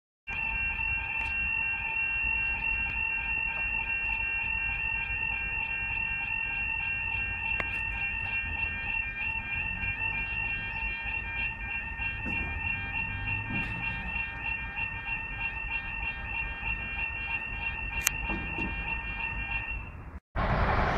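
Level crossing audible warning alarm sounding a steady, rapidly pulsing electronic tone while the barriers lower, the warning of an approaching train.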